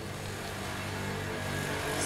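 A low, steady drone with a faint hiss above it, slowly growing louder.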